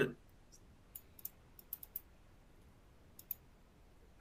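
Light, irregular clicks over quiet room tone: a scattered run of them in the first two seconds, then a quick pair a little past three seconds.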